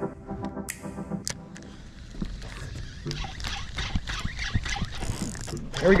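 Spinning fishing reel being cranked by hand, its gears giving a rapid clicking whir as a swim bait is worked up through the water. Electronic music fades out in the first second or so.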